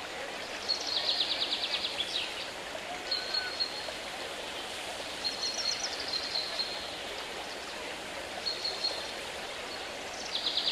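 Steady rushing water, as from a stream or fountain, under a songbird that repeats a short phrase about four times: a high whistled note, twice followed by a fast trill.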